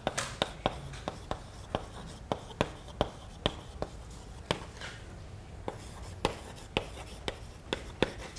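Chalk writing on a blackboard: sharp, irregular taps and strokes, about three a second, with a short lull around the middle.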